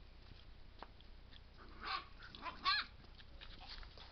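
A Dalmatian gives a few short, high-pitched barks about halfway through, the last one the loudest.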